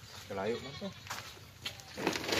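A short bleat-like animal call about half a second in, dropping slightly in pitch, followed by a couple of faint clicks.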